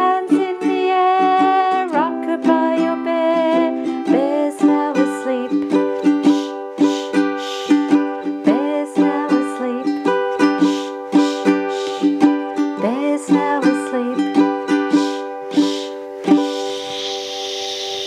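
Ukulele strummed in a steady rhythm, with a woman's singing voice in the first few seconds. Near the end the strumming stops, the chord rings on, and a long 'shh' shushing sound is heard.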